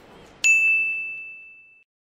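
A logo-sting sound effect: a single bright ding, struck about half a second in. It rings on one high tone, fades, and cuts off suddenly after about a second and a half.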